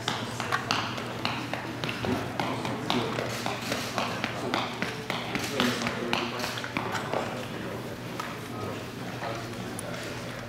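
Fast, irregular patter of a boxer's quick foot strikes on a rubber gym floor as he runs an agility-ladder footwork drill. The taps thin out after about seven seconds.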